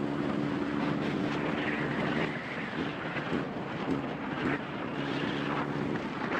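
Kawasaki Z750 motorcycle running at riding speed, a steady engine hum under heavy wind rush on the phone's microphone. The engine note fades into the wind in the middle and comes back near the end.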